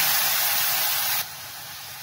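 Water poured into a hot ghee tadka of garlic, cumin and red chilli powder in a kadai, sizzling with a loud hiss that drops suddenly to a softer sizzle a little past a second in.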